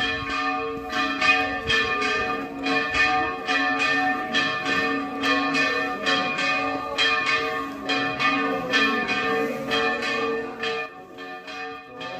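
Church bells ringing a fast festive peal, struck about three times a second without a break, easing slightly near the end.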